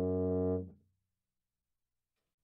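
Tuba holding a low sustained note at the end of a phrase, released about half a second in and dying away quickly.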